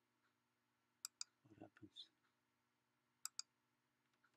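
A computer mouse button clicked in two quick pairs about two seconds apart.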